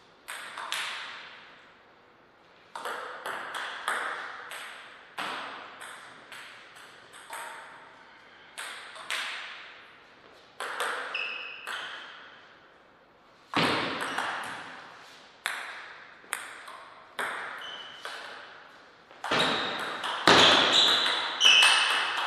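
Table tennis ball clicking off rubber paddles and the table in rallies, strokes a fraction of a second apart, each with a short ringing tail, with quiet pauses between points. A few short high squeaks come about 11 s in and near the end, where the hardest, densest hitting is.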